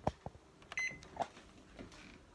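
A sharp knock, then just under a second in a single short electronic beep from a kitchen oven's control panel, followed by another knock.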